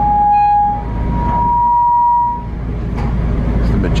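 The low steady rumble of a tour bus idling, heard from inside the cabin, with two long steady high tones over it. The first tone stops just under a second in; the second, slightly higher, sounds from about one to two and a half seconds.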